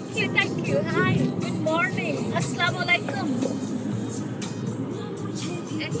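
Song with a singing voice playing over the car's stereo, with a steady low hum of road and engine noise from inside the moving car; the voice fades out about halfway through, leaving mostly the hum.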